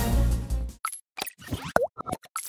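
Closing music that cuts off a little under a second in, followed by a quick run of short cartoon plops and pops with a brief gliding tone, the sound effects of an animated logo outro.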